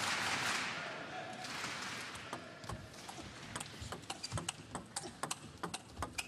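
Table tennis ball striking the table and the players' rubber-faced rackets in a rally: a quick, irregular run of sharp clicks that grows busier over the last few seconds. Under the opening second or so is a crowd murmur in the hall that fades away.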